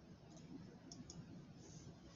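A few faint, sparse clicks over near-silent room tone, as from someone working at a computer.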